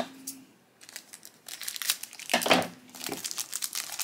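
Thin plastic blind-bag wrapper crinkling and tearing as a small toy figure is unwrapped by hand, in irregular bursts after a brief lull in the first second or so.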